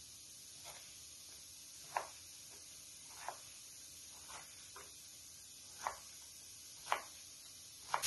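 Kitchen knife striking a wooden cutting board while finely dicing a red bell pepper: a sparse, irregular series of faint knocks, roughly one a second.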